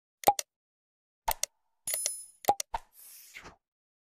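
Subscribe-button animation sound effects: two pairs of short clicks, then a brief bell ring about two seconds in, two more clicks, and a soft swish near the end.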